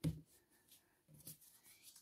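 Faint rustling of paper cutouts and a glue stick being handled on a notebook page, with a short soft tap at the very start.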